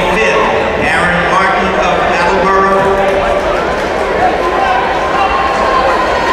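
Indistinct voices echoing in a large indoor track arena, a steady wash of talk and calling with no words that can be made out.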